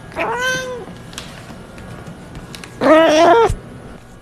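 A cat meowing twice: a short meow that rises and falls in pitch near the start, then a louder, longer meow about three seconds in.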